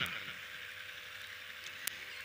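A pause in the speech: faint, steady background hiss with a thin steady hum, and a single short click near the end.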